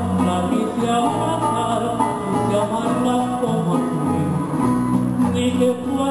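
A small live acoustic folk ensemble plays an instrumental passage: a strummed small four-string guitar with a flute melody over steady bass notes.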